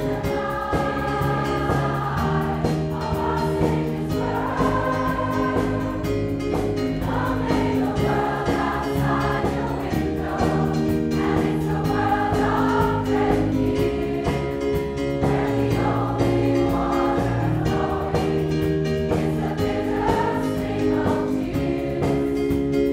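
A large choir of mostly women's voices singing a slow Christmas carol arrangement in sustained, held notes, backed by a live band.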